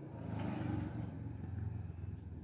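Low rumble of a passing motor vehicle, swelling about half a second in and holding steady.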